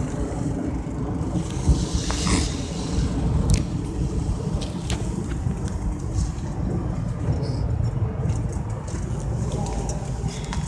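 Phone microphone handling noise: the phone rubbing and knocking against a nylon jacket, with scattered clicks and a rustle about two seconds in, over a steady low rumble.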